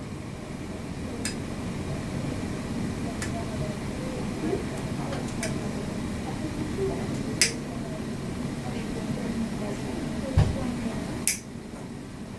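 Nail nippers snipping a horseshoe-curved toenail: about five sharp clicks a second or two apart, the loudest near the middle and near the end, over a steady low room hum.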